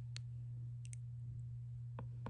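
A few faint, sharp plastic clicks as a toy sippy cup and a baby doll are handled, over a steady low hum.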